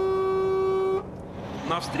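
Truck horn sounding in one long steady note, heard from inside the cab, cutting off about a second in; it is honking in greeting at oncoming trucks. After it, the truck's engine and road noise run on quietly.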